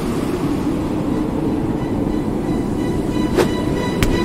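Steady, rough, low rumble of a van's engine, with a faint high whine above it and a single sharp click a little before the end.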